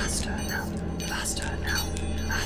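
Whispering voices over a low, steady drone.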